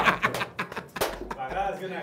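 Low, indistinct voices as laughter dies down, with a single sharp click about a second in.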